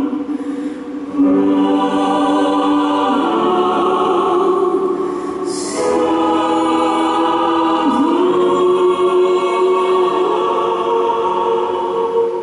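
A female solo voice sings long held notes with a mixed choir in slow choral music. The notes come in about four long phrases, with a short break for a consonant near the middle.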